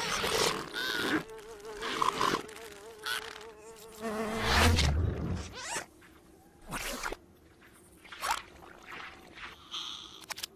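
Cartoon sound effects: a steady, wavering buzz for a few seconds, then a short low thud about halfway, followed by scattered quick clicks and swishes.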